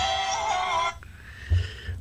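The end of a recorded pop song: a singer's held, wavering note over the band, cutting off about a second in. A faint low bump follows.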